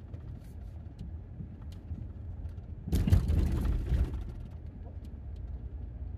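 Minivan driving slowly on a dirt forest road, heard inside the cab: a steady low rumble of engine and tyres with faint scattered ticks. About three seconds in there is a louder, rougher burst of road noise lasting about a second.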